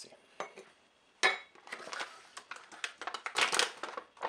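A plastic supplement pouch rustling as it is picked up and handled, in a few short bursts that are loudest near the end. A metal measuring spoon gives a few small clicks.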